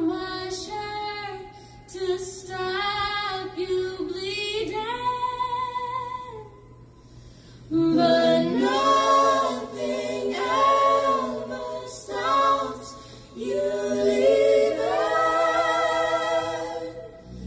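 A small group of men and women singing a song together in close harmony, a cappella, in sustained phrases with a short pause about halfway through.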